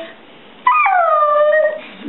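Alaskan malamute giving one howl, about a second long, starting a little over half a second in and falling in pitch as it goes.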